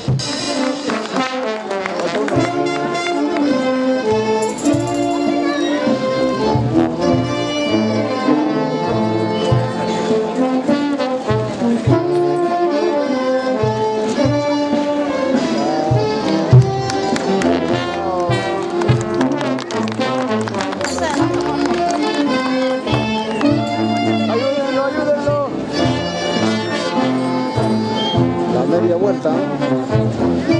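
A brass band of trumpets and trombones playing a steady processional melody, with crowd voices mixed in. A single sharp knock about sixteen seconds in.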